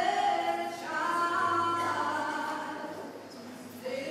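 Voices singing unaccompanied in a church, in long held notes that form a slow melodic phrase, fading somewhat near the end.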